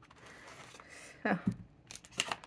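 Quiet handling sounds of a glass ink bottle being lifted out of its cardboard box and set down on paper, with a short spoken "Oh" a little over a second in.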